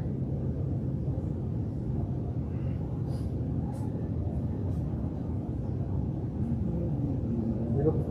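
Steady low hum of greenhouse circulation fans, with a few faint clicks in the middle.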